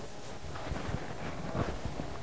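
Steady background room noise with a low hum in a pause between talking, with a couple of faint, brief soft sounds.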